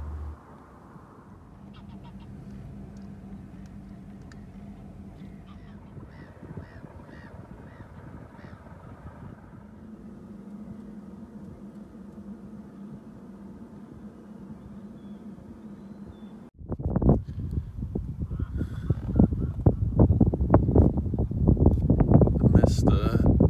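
Quiet open water with a faint steady hum and birds calling in a quick series of short rising calls. About three-quarters of the way through, wind starts buffeting the microphone in loud gusts.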